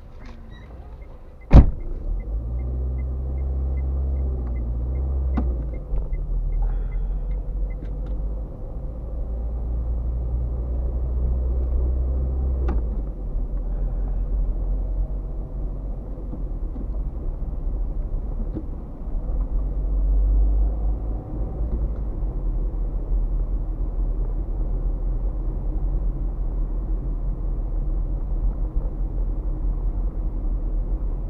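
Car engine and road rumble heard from inside the cabin as the car pulls away and drives along a street, steady and low. A single sharp knock comes about a second and a half in and is the loudest sound, and a light regular ticking runs through the first several seconds.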